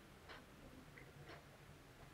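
Near silence: room tone with a faint, regular tick about once a second.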